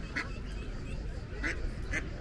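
Ducks quacking: three short calls, one just after the start, one about a second and a half in and one near the end, over a low background rumble.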